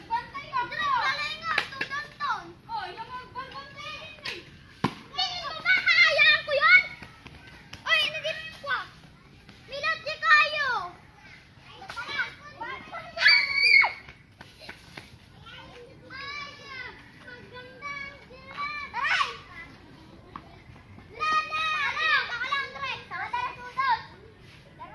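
Children shouting and calling out to each other at play, in repeated bursts of high-pitched voices, with a single sharp knock about five seconds in.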